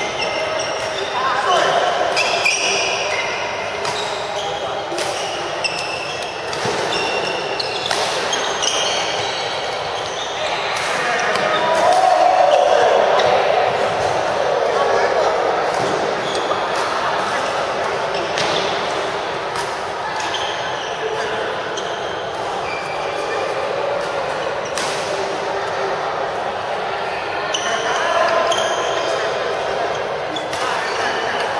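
Badminton play in a large hall: sharp racket-on-shuttlecock hits and short squeaks of shoes on the court mats, with people talking throughout.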